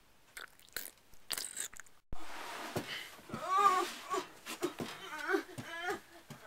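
A few faint clicks and handling knocks, then from about halfway a girl's wordless voice, wavering cries that rise and fall in pitch.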